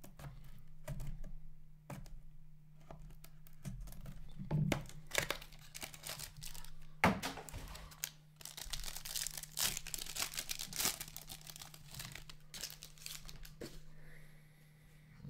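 A sealed trading-card box being worked open with a small blade, with sparse small clicks and scrapes, then from about five seconds in a dense run of crinkling and tearing as a foil card pack is ripped open, with one sharper knock about seven seconds in. A steady low hum runs underneath.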